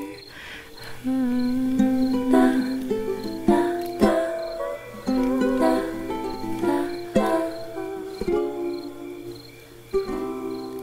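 Ukulele played solo with no voice, a slow run of plucked notes and chords, each ringing and fading before the next.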